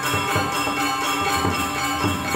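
Balinese gamelan playing: bronze metallophones and gongs ringing in sustained, overlapping tones, with a quick, even beat of struck strokes about four a second.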